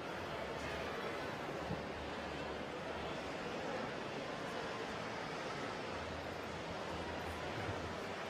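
Steady background noise of a large, busy exhibition hall: an even hum of ambient crowd and room noise with no distinct events.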